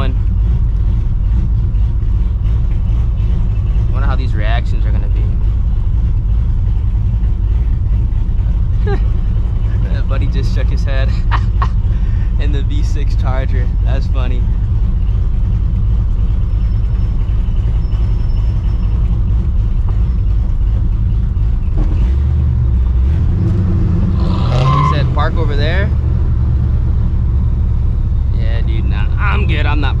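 Cammed, Procharger-supercharged 5.4-litre two-valve V8 in a 1999 Mustang GT idling and rolling at low speed, with a steady deep rumble. Its note shifts about two-thirds of the way through. Voices come and go over it.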